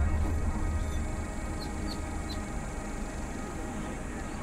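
Ambient soundtrack music of sustained, held tones, its low drone fading away over the first second or so. A few faint high chirps come near the middle.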